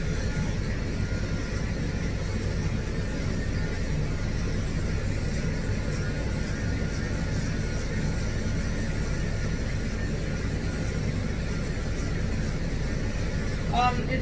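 Cordless pet clipper running with a steady motor hum as its blade is drawn through a Scottish terrier's coat.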